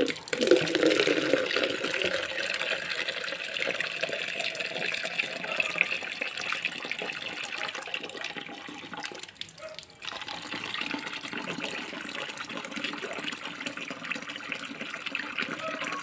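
Water running and splashing onto potted plants as they are watered. There is a brief break about nine seconds in.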